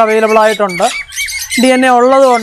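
Caged pet birds give a few short chirps about a second in, in a brief gap between stretches of a man talking.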